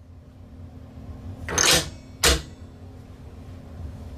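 Rifle bolt pushed forward over a cartridge: a metallic slide about a second and a half in, then a sharp clack as the bolt closes and locks, chambering the round. A steady low hum runs underneath.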